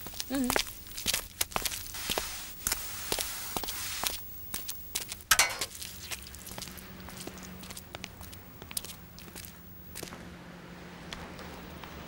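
Footsteps on a hard floor, a run of irregular knocks that thin out over the first half, followed by a faint steady hum.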